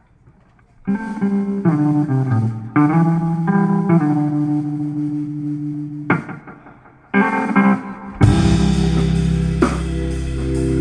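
Live band opening a song: a quiet intro of held electric guitar and bass notes, with a brief pause, then the drums and full band come in loud about eight seconds in.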